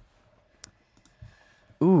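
Low room tone with one sharp click about two-thirds of a second in, then a voice starting near the end.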